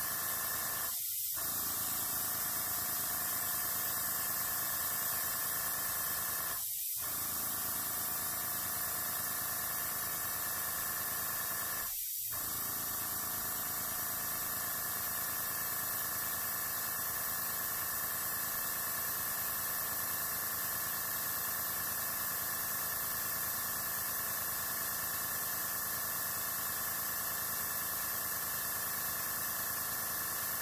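Master airbrush blowing compressed air in a steady hiss.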